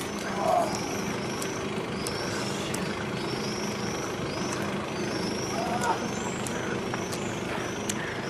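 A steady low mechanical hum, with a short high chirp repeating about twice a second above it.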